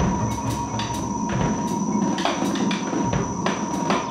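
Free-improvised jazz: dense, irregular percussive strikes from drums and vibraphone mallets over a synthesizer, with two steady high tones held beneath the clatter.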